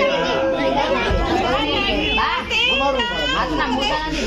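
Several voices talking at once: overlapping chatter of a small group, with some higher voices standing out near the middle.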